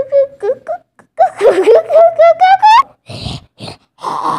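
A child's voice making a wordless, rising wailing sound as a magic-spell effect, the pitch climbing for about a second and a half, followed by two short hissing bursts.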